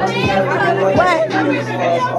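A song with a steady beat playing over a room of people talking and chattering.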